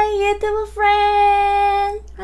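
A woman's voice singing out high, level held notes in a sing-song greeting. A held note ends just after the start, a short note follows, then a long one is held for over a second.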